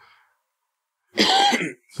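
A man coughs once, sharply, into a close microphone, a little over a second in.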